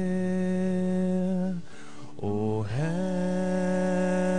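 Slow devotional chant: a voice holding long sustained notes, breaking off briefly about halfway through and sliding up into the next long note.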